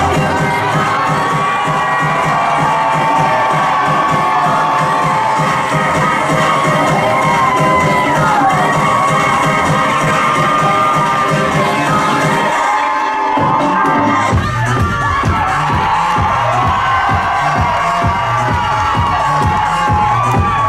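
Loud music with a steady beat playing over a cheering crowd. The bass drops out briefly about thirteen seconds in, then comes back.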